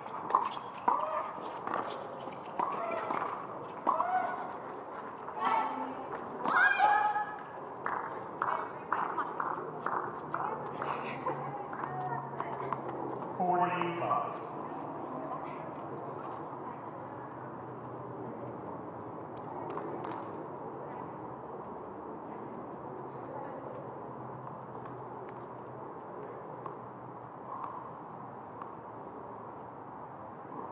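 Doubles tennis point on a hard court: sharp racket-on-ball hits and quick footsteps, mixed with voices, for about the first fourteen seconds. After that only a steady outdoor background with a low hum remains.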